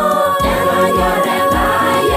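Large choir singing in held, layered harmony over a steady low beat about three times a second.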